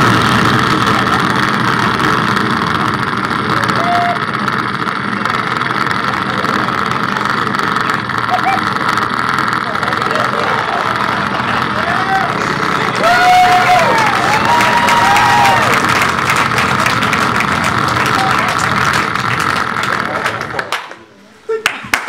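A comedian making a long, continuous noise with his mouth pressed against a handheld microphone, loud and steady, amplified through the club's sound system. It cuts off suddenly about a second before the end.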